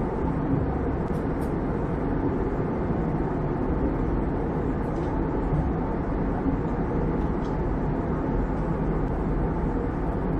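Steady cabin noise of a jet airliner in cruise: an even rush of engine and airflow noise, strongest in the low range, with a few faint high ticks.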